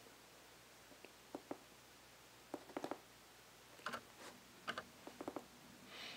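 Faint, irregular clicks and taps of fingers working an iPad mini, coming in small clusters about a second apart.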